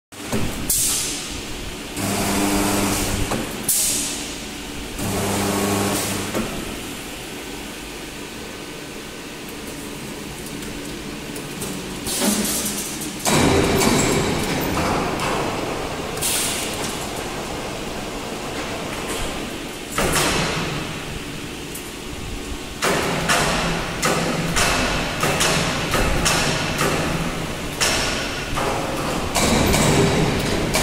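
Automatic steel grating resistance (electro-forge) welding machine working: two short spells of low steady hum near the start, then clanks, knocks and hissing bursts. From about halfway it grows louder and busier, with a run of repeated strikes near the end.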